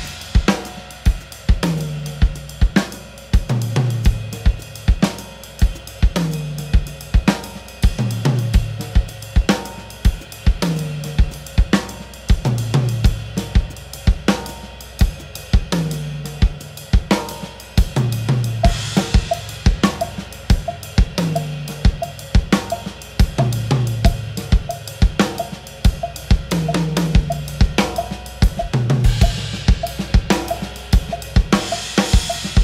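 Drum kit playing a Latin jazz groove: a cascara pattern in the right hand, the bass drum following a bass-line pattern, and left-hand strokes filling in. A low drum stroke that falls in pitch comes round about every two seconds, and a cymbal wash swells about two-thirds of the way in and again near the end.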